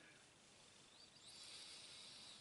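Near silence, then from about a second in a faint, airy sniff lasting about a second as a glass of beer held to the nose is smelled for its aroma.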